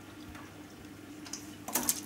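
Faint trickle of aquarium water running from a freshly primed gravel-cleaner siphon hose into a bucket, with a few small ticks.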